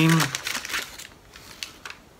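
Foil wrapper of a chocolate bar crinkling as it is handled and unwrapped, in quick crackly bursts in the first half, then dying away.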